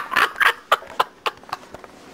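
Irregular sharp clicks and taps of small hard plastic parts, a few a second and fading toward the end, as a disassembled Nokia mobile phone is handled and its parts fitted back together.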